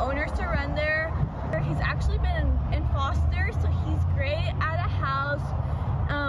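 A woman talking, the words not caught by the transcript, over a steady low rumble that grows louder about a second and a half in.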